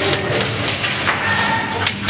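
Scattered airsoft gunfire in an indoor arena: sharp, irregular pops and cracks of shots and BB hits, several in quick succession, over a steady low hum.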